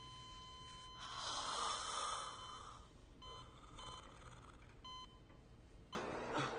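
An electronic monitor's continuous beep tone cuts off about a second in. A rasping, breath-like rush follows, then three short electronic beeps at the same pitch.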